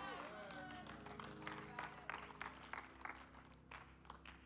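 Scattered, irregular hand claps from a few people in a congregation, faint, with faint voices calling out at the start and a low steady hum underneath.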